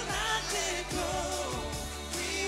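Male singers performing a pop song live into handheld microphones, holding long sung notes that bend in pitch over a musical backing with a steady bass and drum hits.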